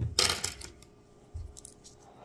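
Liberty Head V nickels clinking together as they are handled: a short metallic jingle just after the start, then a few light clicks near the end.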